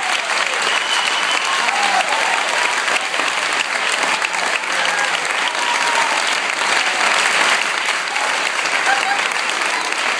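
A group of people clapping steadily, with a few voices calling out over the applause.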